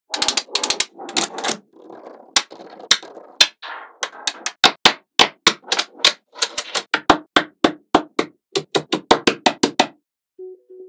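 Small magnetic balls clicking sharply together as blocks of them are snapped into place, in quick irregular clicks, with a softer rattle of loose balls rolling and shifting about two to four seconds in.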